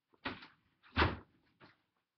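Three short bumps or knocks, the loudest about a second in.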